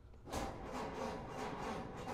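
1931 Ford Model A's starter cranking its four-cylinder engine, a steady rhythmic churning that begins about a third of a second in. The engine does not catch because the choke has not been pulled.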